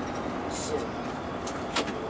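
Steady road and engine noise inside a moving tour coach's cabin, with two sharp clicks near the end, the second one the loudest.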